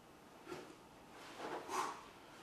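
A man's forceful exhales while straining through leg raises and hip raises: a short puff about half a second in and a longer, louder breath near the end.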